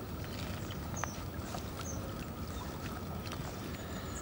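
Shallow lake water sloshing and dripping, with scattered small splashes, as a large common carp is lifted out of a floating retention sling, over a steady low rumble.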